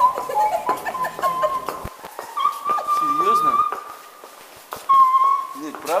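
A high-pitched voice making whining sounds in long held notes, one lasting about a second midway and a shorter one near the end. Scattered footsteps and group chatter sound around it.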